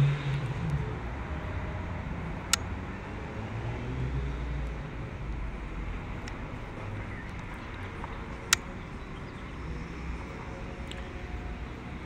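Steady low outdoor background rumble, with two sharp clicks, one about two and a half seconds in and another about six seconds later.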